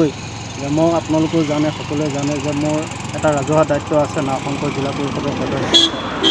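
A man speaking in Assamese at a press interview, talking steadily throughout, over a faint steady background hum.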